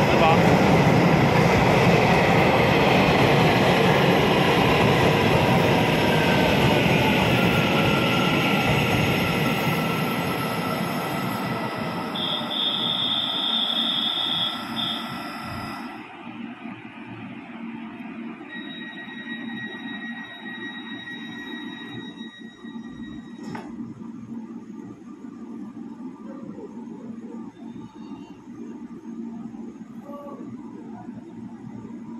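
A Taiwan Railway local commuter electric train running along an underground station platform as it comes in. Its wheel and motor rumble is loud at first and fades over about sixteen seconds as it slows, with a high tone sounding near the middle. Then there is a much quieter station hum with steady high whines and a single click.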